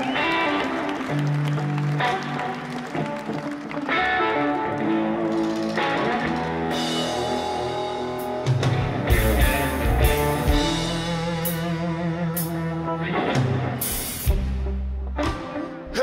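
Live rock band playing an instrumental intro: Stratocaster-style electric guitar picking a riff over electric bass and drum kit. The bass and drums fill out from about halfway through, with cymbal crashes.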